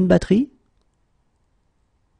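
A voice finishing a short spoken phrase, stopping sharply about half a second in, then silence.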